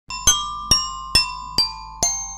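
Opening jingle of bright, glassy struck chime notes, glockenspiel-like: four strikes a little under half a second apart, each ringing on, over a faint low hum.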